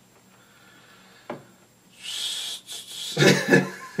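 Quiet small room with one faint click, then a man's short, breathy exhale about halfway through, and his voice starting up near the end.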